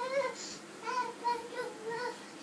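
A toddler's high voice singing a run of short wordless notes.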